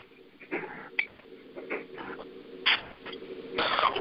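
A broken-up mobile phone connection on a conference call: a steady hum with scattered short clicks and brief garbled bursts of sound.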